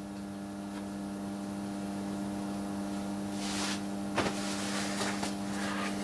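Steady electrical mains hum, two low tones held constant, from a watt-hour meter test rig carrying a steady 35 amps of load current. A few brief soft rustles come in after about three seconds.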